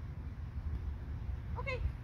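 Mostly speech: a single spoken "okay" near the end, over a steady low background rumble.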